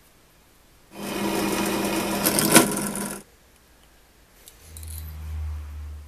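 A small electric tool motor runs for about two seconds, with a sharp click near the end; a low hum then swells and fades near the end.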